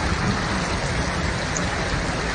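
Heavy rain and floodwater rushing down a city street, a steady loud hiss of water.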